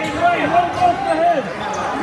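Indoor basketball game sounds: a basketball being dribbled on the hardwood gym floor, with a run of short, high squeaks from players' sneakers over spectators' voices.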